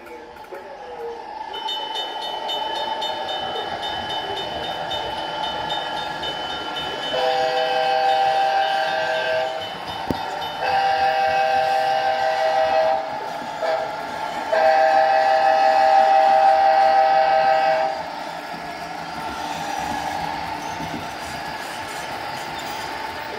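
A model diesel locomotive's sound decoder running, then sounding a multi-chime horn in two long blasts, a short one and a final long one, the grade-crossing signal.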